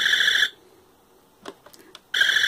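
Talking Buzz Lightyear action figure's electronic laser sound effect from its forearm button: a short buzzing electronic tone lasting about half a second. A few faint clicks follow about a second and a half in.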